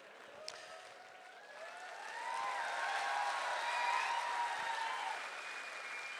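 A hall audience applauding and laughing in response to a joke. It swells about a second and a half in, peaks in the middle and then fades.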